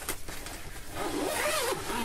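Zipper on a padded guitar gig bag being pulled open along its length, a steady zipping that wavers in pitch with the speed of the pull, with a click near the start.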